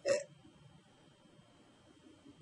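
A single short, hesitant "uh" from a woman's voice at the very start, then near silence with faint room tone.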